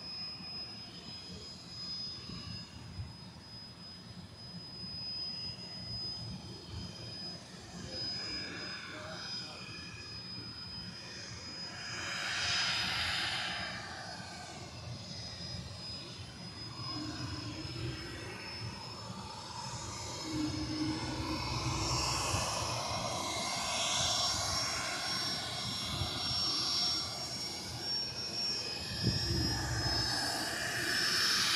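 Business jet's turbofan engines running at taxi power, a steady high whine over a rush of engine noise that swells louder twice.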